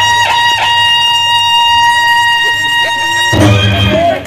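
Loud live devotional music on an electronic keyboard, holding one long sustained note. Near the end the music changes and a deeper bass part comes in.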